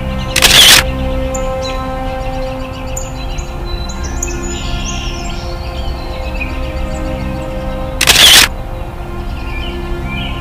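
Background score of sustained held tones with birds chirping faintly, cut twice by a loud, short camera-shutter sound effect, about half a second in and again near the end.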